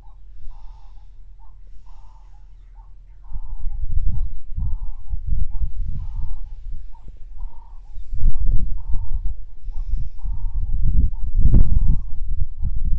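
Wind rumbling on the microphone from about three seconds in, gusting harder twice later on. Under it an animal, most likely a bird, repeats a short call a little more than once a second.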